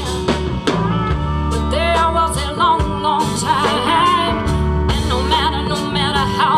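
A live blues band playing, with drum kit, bass and guitar under a singing lead line that wavers in vibrato.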